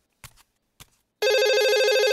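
Telephone ringing: a steady electronic ring starts a little over a second in. Two faint taps come before it.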